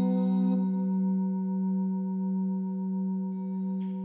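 A singing bowl ringing on with one steady, low, full tone and many overtones, its loudness wavering slowly in a gentle pulse.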